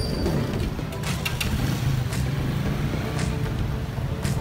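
Street traffic: passing road vehicles, with motorcycle and motor-tricycle engines, mixed with background music.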